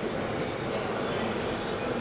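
Steady rumbling background noise with no distinct tone, and a brief high hiss at the very start.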